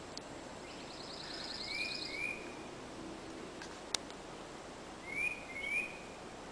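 Wild birds singing: a fast, high trill about a second in, and short whistled notes in pairs, twice. A single sharp click near the middle.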